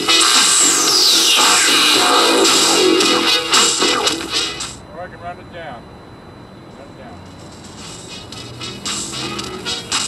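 Electronic-style music played over Bluetooth from the laptop through a Realistic SCR-3 boombox, loud at first, with a falling whooshing sweep about half a second in. About five seconds in the sound drops sharply to a quieter, thinner passage, then fills back out near the end.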